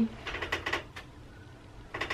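A soft, brief laugh of a few breathy pulses in the first half-second, then only faint room noise.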